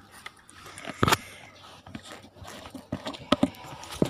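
A few scattered knocks and clicks, the loudest about a second in and a sharp pair a little past three seconds, over faint background noise.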